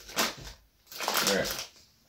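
Crinkly plastic sweet bag of jelly babies rustling as it is handled: a short crinkle at the start and a longer one about a second in.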